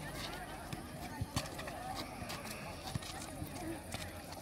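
Futsal game ambience: scattered, distant voices of players and spectators, with a few short sharp knocks from the ball and shoes on the asphalt court.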